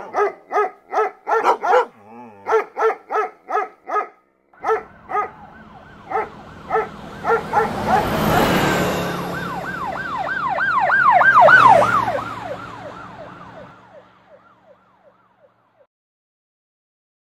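A dog barking rapidly, about four barks a second, thinning out after a few seconds as a police car siren comes in, a fast rising-and-falling yelp over the rush of the passing car, loudest about three-quarters of the way through and then fading away.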